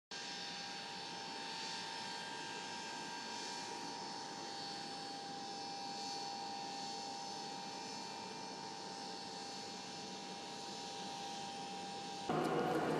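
Steady mechanical whine holding one constant tone over a hiss, with no change in pitch or level.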